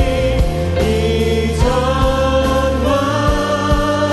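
Live worship song: a woman and a man singing together in Korean over strummed acoustic guitar, with bass and a steady beat from the band.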